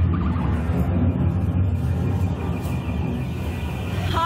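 Steady low rumbling drone with a hiss of noise above it, a spooky ambient backdrop.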